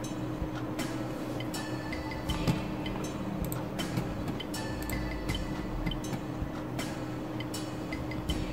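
Irregular light clinks and ticks, some with a brief high ring, over a steady low hum.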